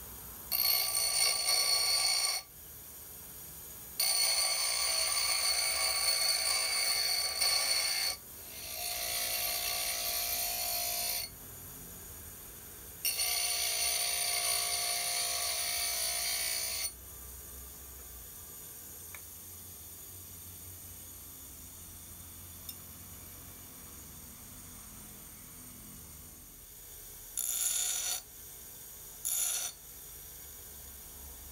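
Bench grinder wheel grinding a forged tool-steel shear blade in repeated passes, the ringing grind starting and stopping as the steel is pressed on and lifted off. There are four passes of two to four seconds each, then two brief touches near the end, with the wheel spinning freely and faintly between them.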